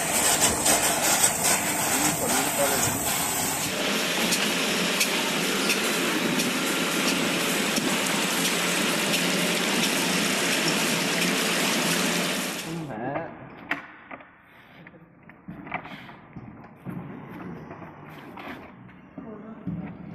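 Water rushing and splashing into a wastewater treatment tank, a loud steady hiss that changes character about four seconds in and stops abruptly about two-thirds of the way through. A much quieter stretch with scattered light clicks and knocks follows.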